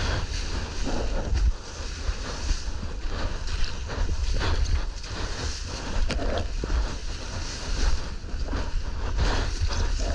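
Wind buffeting an action camera's microphone in uneven gusts, over the rushing hiss of whitewater foam and spray as a surfboard rides through broken surf.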